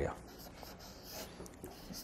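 Faint strokes of a marker pen writing on a flip-chart paper pad.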